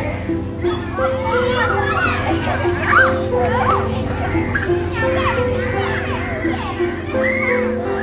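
Many children's voices calling out and shouting at play, rising and falling in pitch, over background music with a repeating melody of held notes.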